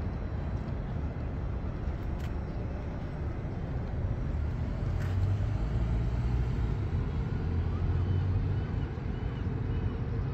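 Steady low outdoor rumble, a little louder in the second half, with a couple of faint clicks and faint short chirps near the end.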